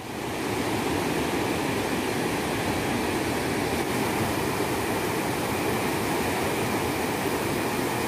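Steady rushing of a river running in white-water rapids, fading in at the start.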